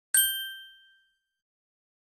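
A single bright bell-like ding, a logo sound effect. It strikes just after the start and rings out over about a second.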